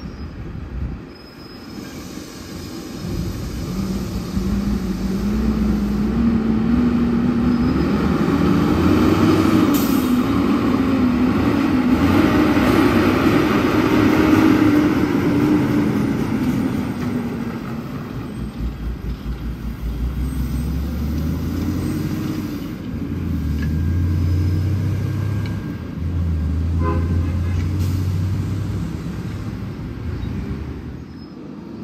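Diesel engine of a heavy tractor-trailer loaded with sugar cane as it drives up and passes close by. Its note rises and wavers as it nears, is loudest about halfway through, then fades. In the last third a lower, steadier engine hum from other road traffic takes over.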